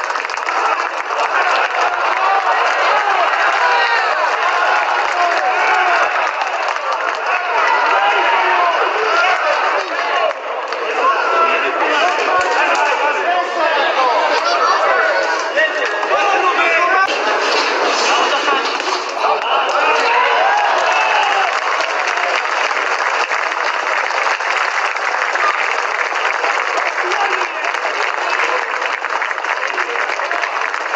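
A boxing crowd's voices shouting and calling out over one another.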